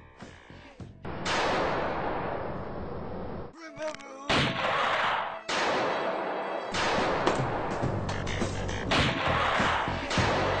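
A series of loud blasts like gunfire or explosions, each starting suddenly and fading away over a second or two.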